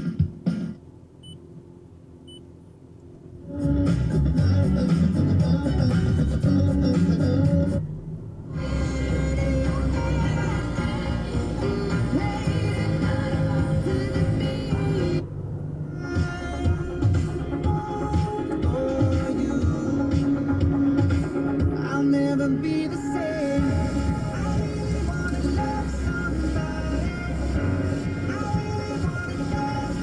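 Music from the car radio: after a short, quieter stretch, a song with a steady beat starts about three and a half seconds in and plays on.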